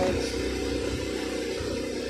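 A steady low rumble of a vehicle in motion.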